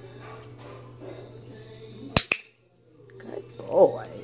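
A dog-training clicker clicks twice in quick succession about two seconds in, marking the puppy's behaviour. A little over a second later the puppy gives one short, high-pitched bark, the loudest sound here.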